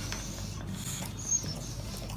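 A dog sucking a drink up through a plastic straw: faint slurping with small clicks and a brief high squeak about halfway through, over steady room noise.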